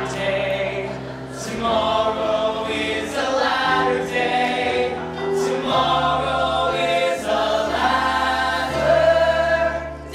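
Large mixed-voice stage ensemble singing held choral chords over orchestral accompaniment, the chords shifting every second or two.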